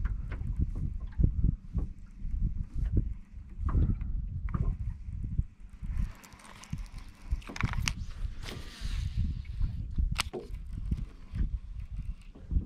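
Choppy water slapping against a small boat's hull in irregular low knocks, with wind rushing over the microphone for a few seconds in the middle.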